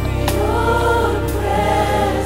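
A choir singing a gospel worship song over a band, with long held notes and a steady bass underneath.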